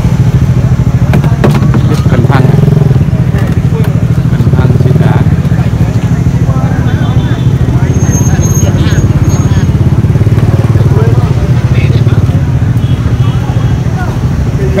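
Steady, loud low engine drone, like a small engine idling, running unchanged throughout, with people talking in the background.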